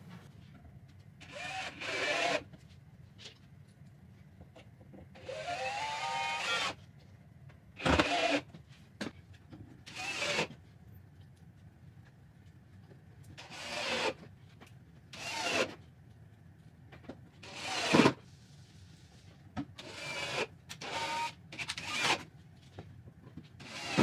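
Cordless drill driving screws into wood in about ten short runs. Its motor whine rises as it spins up on some runs, and there are quiet gaps between them.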